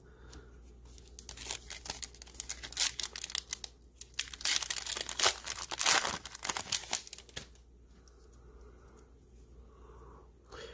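Plastic wrapper of a 2020 Score football trading-card pack being torn open and crinkled by hand: a dense run of sharp crackles and rips for about six seconds, stopping about seven and a half seconds in.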